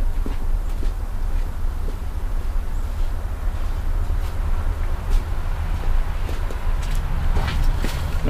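A steady low rumble with a few faint knocks and footsteps as a person walks away and comes back.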